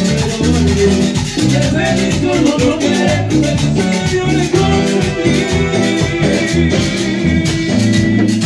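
Amplified live cumbia band playing a dance mix, with an even percussion beat over a bass line.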